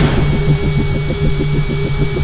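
Produced intro sound effect: a low, evenly pulsing hum over a noisy hiss, about seven pulses a second.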